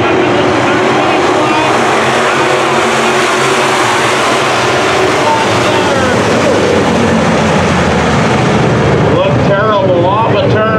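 Engines of a field of sport modified dirt-track race cars running together around the oval, a steady, dense drone with several engine notes layered over one another.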